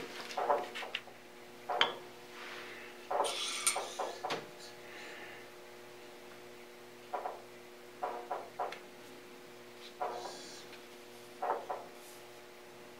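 Metal tools and a cast part being handled and set down on a surface plate: scattered light knocks and clicks with a few brief scrapes, over a steady low hum.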